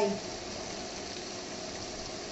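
Pork, shrimp and squid sizzling steadily in a hot frying pan.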